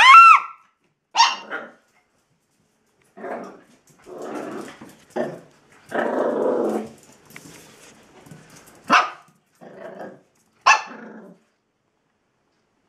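Chihuahua growling and barking in short bursts as it goes for the owner's feet. It opens with a high yelp, then sharp barks come between longer low growls, stopping shortly before the end.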